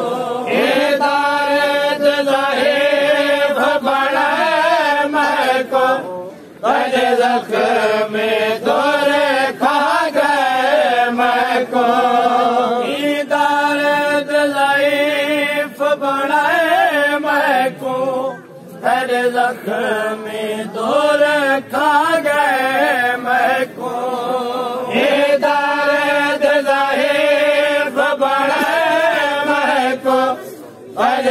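Male voices chanting a noha, a Shia mourning lament, sung in long held phrases that break off briefly every few seconds.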